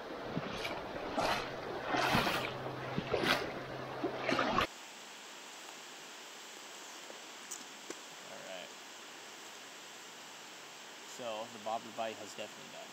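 Shallow stream water splashing and sloshing around wading legs in a run of loud surges, stopping abruptly a little over four seconds in. A quieter steady rush of flowing water follows, with a faint voice near the end.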